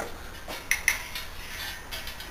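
Two quick metallic clinks, a little under a second in, from steel lifting chains on a homemade overhead crane as they knock against the frame while holding a suspended generator.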